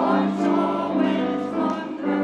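Mixed church choir singing with grand piano accompaniment, the sung notes changing about every half second.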